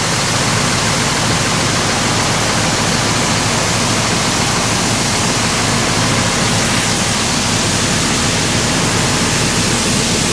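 Pressure washer jet spraying onto a steel chequer-plate truck tray: a steady, loud hiss of water with a continuous low hum from the machine under it.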